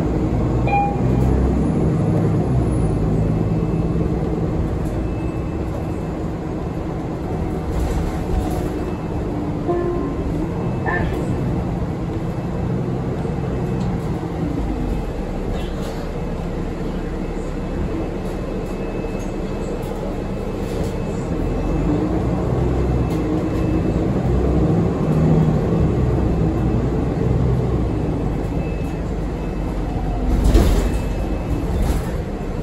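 Nova Bus LFS city bus heard from inside the cabin while under way: a steady low engine and road rumble with a drivetrain whine whose pitch rises and falls as the bus speeds up and slows.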